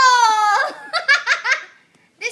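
A young child's high-pitched squeal, sliding slightly down in pitch, breaking into a quick run of giggles that stops about one and a half seconds in.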